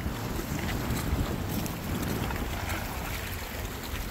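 Wind buffeting the microphone steadily, with the sea washing against the jetty's rocks beneath it.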